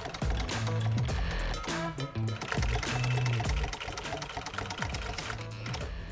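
Walking-foot sewing machine stitching a French seam through leather, running steadily in rapid needle strokes, under background music.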